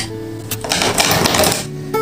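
Soft guitar music playing, with a clattering rattle of markers knocking together in a clear pen holder as one is pulled out, starting about half a second in and lasting about a second.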